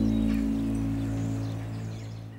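Dramatic background score: a low sustained chord that fades out towards the end, with faint bird chirps above it.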